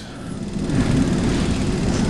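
A steady rushing noise, like a distant engine, swells in over about the first half second and then holds evenly.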